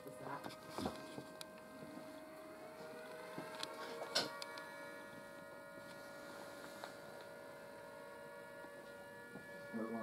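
A steady electrical hum of several held tones. A sharp click comes about four seconds in.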